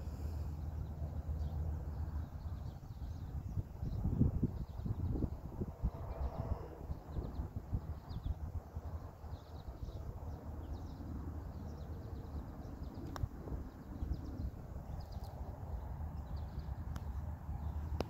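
Outdoor ambience: wind rumbling on the microphone, swelling about four seconds in, with scattered faint bird chirps and a single light click about thirteen seconds in.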